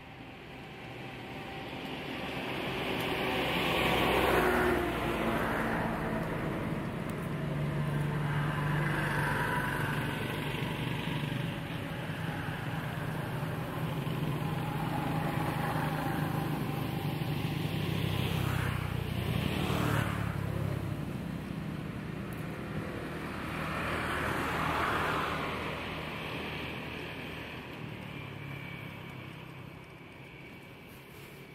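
Motor vehicle engines running and passing: a low steady engine hum swells over the first few seconds, holds through the middle with a couple of rising and falling glides, swells once more late on, and fades near the end.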